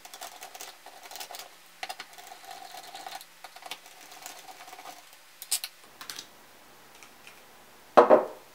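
Screwdriver backing out small screws from a thermometer's plastic faceplate: a run of light, rapid clicks and ticks, with two louder taps about five and a half seconds in.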